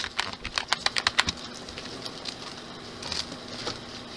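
Plastic cracker wrapper crinkling in the hands: a quick run of sharp crackles over the first second, then a few scattered ones a couple of seconds later.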